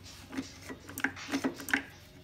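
Light, irregular clicks and taps of metal parts on a mower's freshly reassembled starter assembly being handled, about seven in two seconds.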